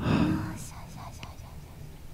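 A young woman whispering softly and intimately, ASMR style. It is loudest in the first half second and then trails off.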